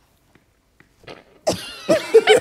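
Near silence for about a second, then a person bursts out laughing about one and a half seconds in, with a sudden explosive start.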